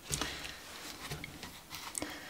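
Faint rustling and a few light taps of a small deck of cards being picked up and handled in the hands.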